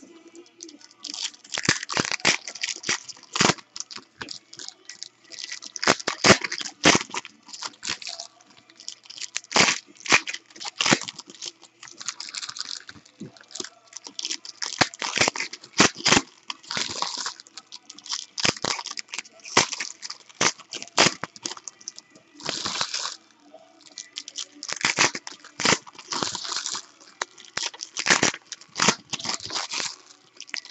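Foil trading-card packs crinkling and tearing as they are ripped open and the cards pulled out. Irregular bursts of crackling and rustling follow one another with brief pauses.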